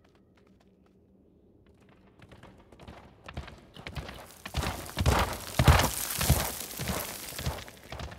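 Wildebeest hooves galloping past on dry, dusty ground: a run of thudding hoofbeats that starts faint about two seconds in, swells to its loudest in the middle and then thins out as the animal passes.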